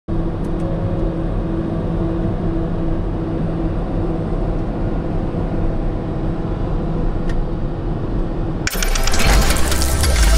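Steady drone of the Piaggio Avanti P180's twin PT6 turboprop engines heard from inside the cockpit, a low hum with a few steady engine tones. Near the end it cuts suddenly to louder music.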